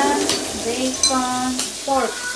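Food sizzling on a hot tabletop electric cooker, with a few light clinks of utensils. A short, held voice sound comes in about a second in.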